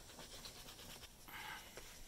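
Faint, soft rubbing of hands palming wet, soapy wool felt, in repeated strokes.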